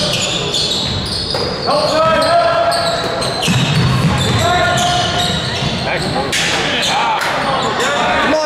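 Indoor basketball game: a ball dribbling on a hardwood court, with short sharp impacts throughout and sneakers squeaking, amid voices from players and spectators in a large gym.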